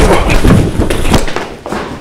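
A scuffle: loud, repeated thuds and knocks of bodies hitting leather armchairs and the floor, an armchair being knocked over, easing off after about a second.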